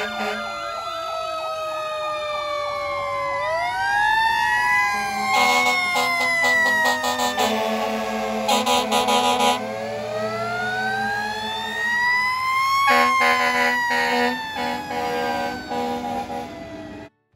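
Fire engine sirens wailing in slow rising and falling sweeps, several overlapping. Bursts of rapid repeated air-horn blasts come in about five seconds in, again around nine seconds, and from about thirteen seconds.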